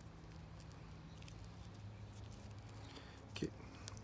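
Faint rustling and small ticks of hands handling plastic grafting wrap around the top of a grafted stump, over a low steady hum, with a brief voice sound near the end.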